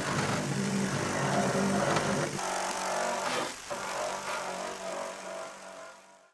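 Electric grinder running a rotary abrasive wheel against a copper sheet: a steady motor hum under a loud grinding hiss. The motor's tone changes about two seconds in, and the sound fades away near the end.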